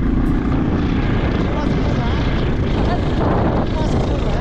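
Loud, steady rumbling of wind buffeting the camera microphone.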